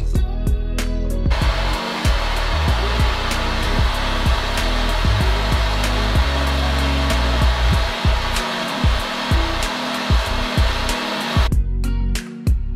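A steady rushing, hissing noise from a heating tool starts about a second in and cuts off sharply just before the end, over background guitar music.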